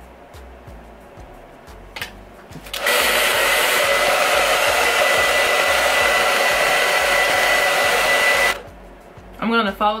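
Conair handheld hair dryer switched on about three seconds in, blowing steadily with a thin high whine, and cut off about a second and a half before the end. It is drying freshly sprayed hold spray on a wig's lace front.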